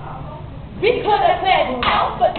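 A step team's chanted call with sharp hand claps, both starting about a second in after a brief lull.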